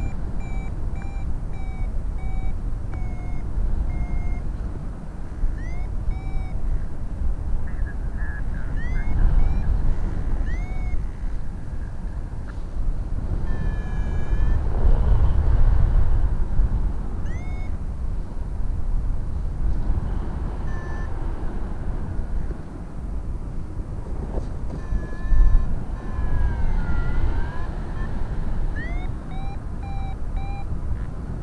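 Airflow buffeting the microphone in flight, with a paragliding variometer (Flymaster) sounding over it: short evenly spaced beeps at first, then quick rising chirps, and a falling tone near the end.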